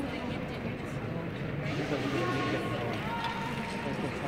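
Indistinct voices of people talking over a steady background hum of a large indoor ice arena.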